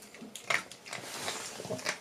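A few short clicks and soft rustles of dry dog kibble on a tile floor as a small dog is hand-fed, sniffing at the pieces.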